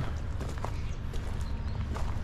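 Footsteps of a person walking on a wood-mulch bed, with faint scattered clicks over a steady low rumble.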